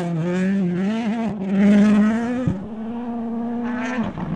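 Ford Puma Rally1 car running hard on a gravel stage, its engine note rising slowly, with a louder rush of tyre and gravel noise about a second and a half in. About two and a half seconds in there is a short knock and the note dips, then it runs on steady.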